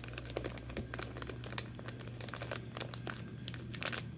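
Clear plastic crinkling and clicking in the fingers, with many small irregular crackles, as small plastic ring sizers are handled and bent.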